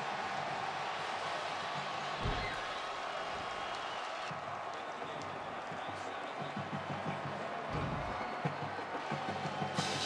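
Steady stadium crowd noise, with music playing in the stadium and a couple of low thumps, as a crowd reacts to a safety awarded on replay review.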